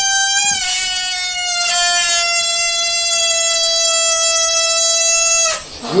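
Air squealing out of a rubber balloon through its neck, stretched taut between the fingers: one long, loud squeal whose pitch drops slowly as the balloon empties under its own steady tension. It ends about five and a half seconds in with a brief rush of air.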